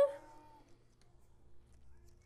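A voice sliding up in pitch, ending about half a second in, followed by a quiet room with a low steady hum and a few faint small knocks.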